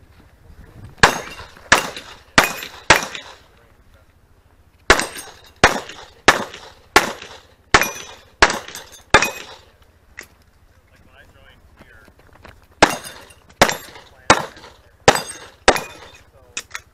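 9mm Just Right Carbine firing shots about two-thirds of a second apart in three strings of four, seven and five, with short pauses between strings.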